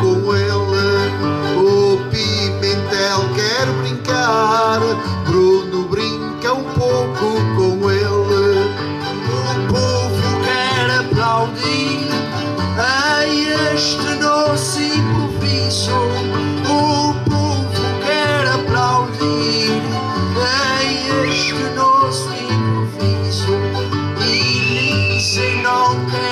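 Acoustic guitar and two smaller plucked string instruments playing an instrumental interlude between the sung verses of a Portuguese desgarrada, with a steady moving bass line under a plucked melody.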